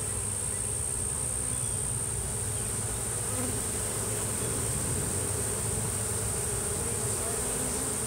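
A honeybee swarm humming steadily, the mass of bees crawling up a wooden ramp into a hive. A thin, steady high tone runs over the hum.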